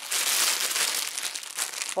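Clear plastic wrapping around plush toys crinkling as it is handled, loudest in the first second and then thinning to scattered crackles.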